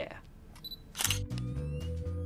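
A single camera-shutter click about a second in, followed at once by outro music with a steady, stepping bass line.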